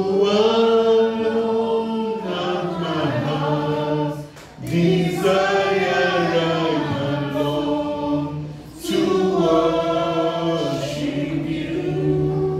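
A man singing unaccompanied into a microphone in three long phrases of held notes, with short breaks for breath about four and nine seconds in.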